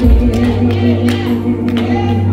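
Gospel song performed live over a microphone: a man's voice holding a long, wavering sung note over steady sustained accompaniment, with short hits keeping a regular beat.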